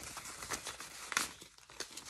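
Paper banknotes rustling and crinkling as a stack of bills is handled and fanned out by hand, in irregular crackles with a sharper one just past a second in.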